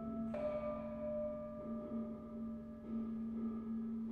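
Tuned bronze gamelan instruments ringing: a low gong tone hums steadily under higher metallophone tones, and one new strike about a third of a second in rings out and slowly fades.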